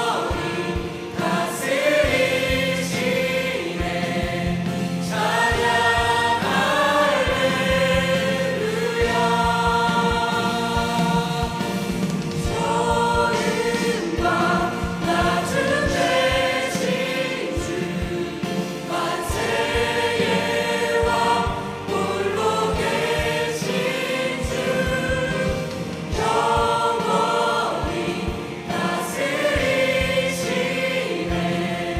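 A mixed choir of young and adult voices singing a Korean worship song, in long held phrases.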